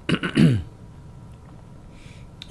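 A man clears his throat with a single short cough, a rough burst whose voice falls in pitch, lasting about half a second at the start.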